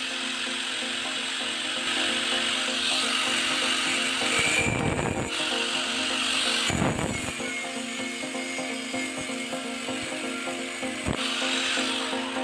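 Angle grinder running and cutting corrugated steel rebar into short pieces, a high grinding noise in several stretches with brief breaks between cuts, over background music.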